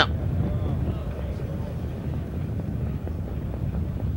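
Steady low rumble of racetrack background noise, with no distinct events.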